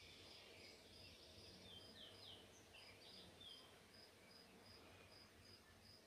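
Near silence with a faint insect chirping steadily, about two and a half chirps a second, and a few short falling chirps around the middle.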